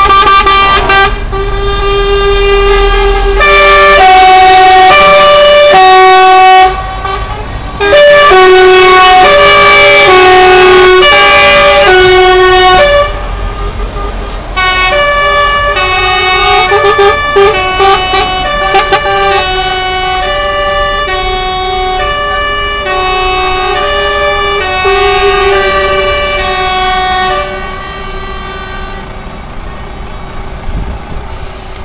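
Truck air horns sounding loudly in long held notes that step up and down in pitch like a tune, with short breaks, over the low rumble of passing diesel trucks.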